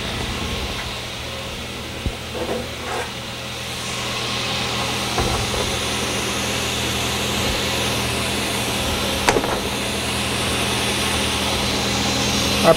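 Table saw with a thin-kerf blade running freely at speed, a steady motor hum and whirr, not yet cutting. A few light knocks come through at intervals.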